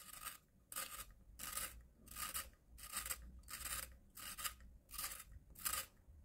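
A hand-held long-point pencil sharpener's blade shaving the wood of a pencil as it is twisted round, peeling off a long unbroken curl. Nine short, quiet strokes follow at an even pace, about one every two-thirds of a second.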